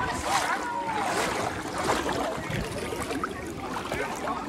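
Swimming-pool water sloshing and lapping around the camera as it moves through the water at the surface, with the faint voices of other swimmers behind.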